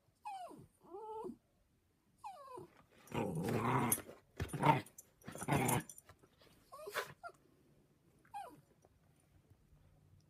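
A dog whining in short, falling cries, then growling in three rough stretches a few seconds in, then whining briefly twice more near the end.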